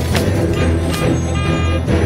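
Animated-film soundtrack: music, with a school bus honking its horn once, briefly, about a second and a half in.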